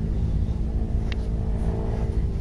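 Small two-stroke engine of a backpack power sprayer running steadily, with a light click about a second in.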